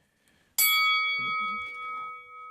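A single struck bell, a boxing-ring bell, rings out about half a second in and decays slowly. It marks the end of a round.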